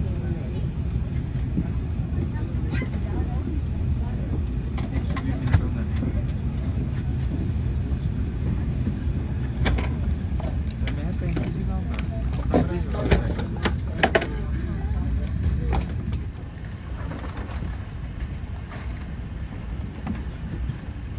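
Steady low rumble of cabin noise inside an airliner taxiing on the ground, with scattered clicks and knocks; the rumble eases off somewhat about sixteen seconds in.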